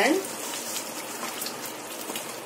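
Wooden spatula stirring a thick, wet curry gravy in a nonstick pan: a soft, steady wet noise.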